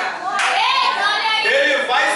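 Speech only: a man preaching in Portuguese into a handheld microphone, his voice amplified.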